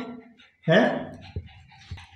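A short voice-like call about half a second in, then a pug panting quietly, with two soft thumps.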